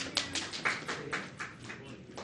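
A few people clapping, a quick run of separate claps at about six or seven a second.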